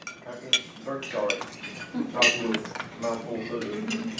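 Cutlery clinking on plates and dishes at dining tables, with a few sharp clinks about half a second and two seconds in, over the murmur of diners talking.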